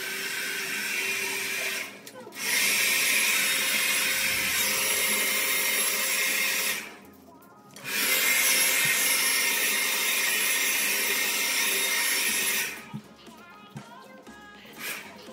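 Hand-held hair dryer blowing steadily with a faint whine, switched off briefly twice and cut off near the end.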